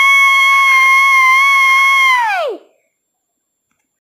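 A child's high-pitched held vocal note, a long "ahh" that stays steady at one pitch and then slides down and stops about two and a half seconds in.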